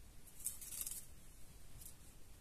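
Faint rustle of a coloured paper page being handled, a brief swish about half a second in and a shorter one near the end.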